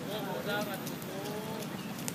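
People's voices talking, not close to the microphone, with a few faint knocks in the background.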